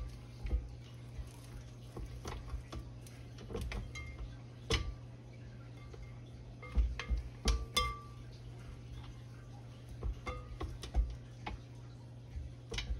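A silicone spatula scraping down the glass bowl of a stand mixer: scattered clinks and knocks against the glass and the beater. The loudest come about halfway through, some ringing briefly.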